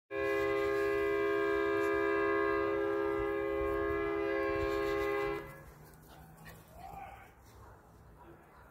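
A vehicle horn held in one long, steady blast for about five seconds, cutting off abruptly, followed by faint outdoor background.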